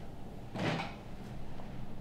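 A brief handling sound of wooden furniture, like a cabinet door or drawer moving, about half a second in, over a faint steady low hum.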